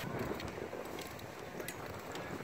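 Steady wind noise on the microphone, with a few faint clicks.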